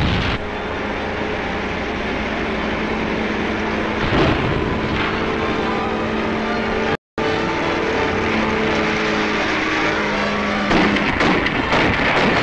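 Old film soundtrack: a steady, engine-like drone over a noisy rumble, cutting out for an instant about seven seconds in and turning rougher near the end.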